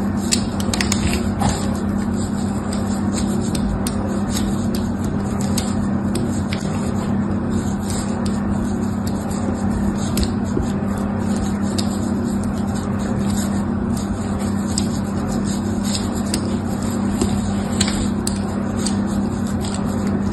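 A small blade scratching lines into a bar of dry soap: a continuous scratchy scraping dotted with tiny crackling clicks, over a steady low hum.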